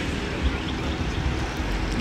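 Steady outdoor noise of an urban parking lot, with an uneven low rumble and no distinct events.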